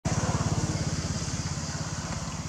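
A motorcycle engine running with a fast, even pulse, gradually fading.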